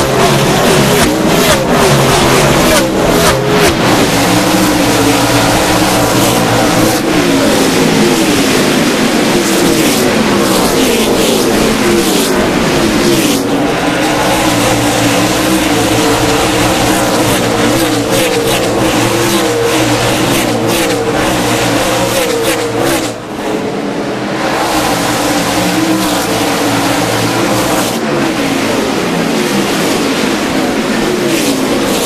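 A pack of NASCAR Cup stock cars' V8 engines running at racing speed, many engines overlapping, their notes rising and falling as the cars pass close by. The sound dips briefly about three-quarters of the way through.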